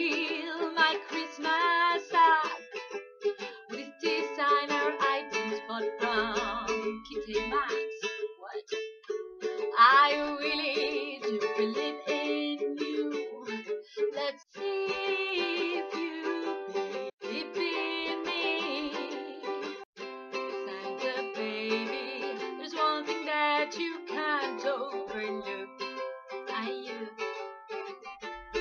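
Ukulele strummed as accompaniment in a small room, with a voice singing along at times between the lyric lines.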